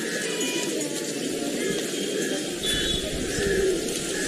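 Pigeons cooing, with a few short high bird chirps, over the steady murmur of an open square.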